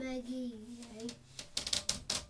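A child's voice holds one long sung note, which stops a little after a second in. Then comes a quick flurry of short, sharp rustling noises near the end.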